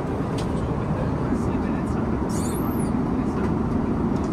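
Steady low roar of an Airbus A350's cabin in cruise: engine and airflow noise heard from inside the cabin.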